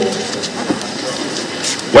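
A pause between a man's phrases over a public-address microphone: a steady background hiss, with the echo of his last word dying away at the start. His voice returns right at the end.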